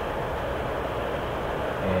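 Steady background noise, an even hiss over a low rumble, with no distinct event.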